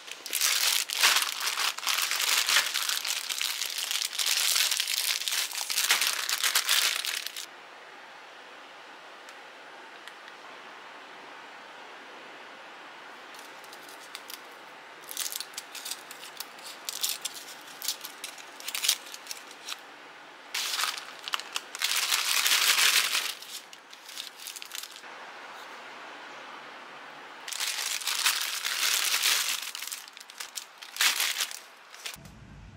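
Plastic candy bags of Hershey's chocolates crinkling and crackling as they are handled, torn open and emptied, with bits of foil wrapper. It comes in bursts: a long stretch over the first seven seconds, scattered crackles in the middle, then shorter bursts a little past twenty seconds and near the end.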